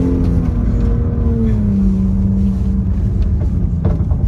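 BMW M2's turbocharged straight-six running hard in a drift on ice, heard from inside the cabin over a deep rumble; the engine note eases down slightly about two seconds in and then holds steady.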